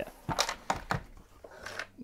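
Grey plastic Dremel carrying case being handled and unlatched, giving several light clicks and knocks of plastic as the lid is opened.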